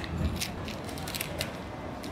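Crinkling and small irregular ticks of a snack packet being opened by hand, over a steady low murmur of street traffic and passers-by.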